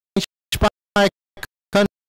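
A voice chopped into short clipped snippets, two or three a second, with dead silence between them: the audio track is dropping out, so no words come through.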